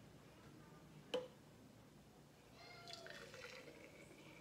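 A single light clink about a second in, then celery juice poured faintly from a glass measuring cup into a glass mason jar during the last second and a half.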